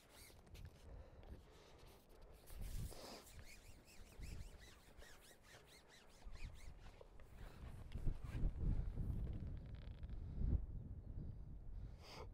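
Wind gusting on the microphone, an uneven low rumble that grows stronger in the second half, with a few faint clicks and rustles in the first few seconds.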